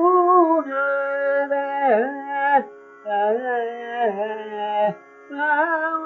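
A man singing Carnatic vocal music in raga Kedaragowla: flowing phrases on an open vowel with wavering, ornamented pitch over a steady drone, in three phrases with short breaths between them.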